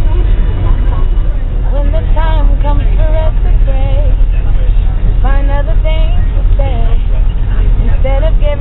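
Steady low rumble of a bus driving, with a voice coming in over it in a few short phrases.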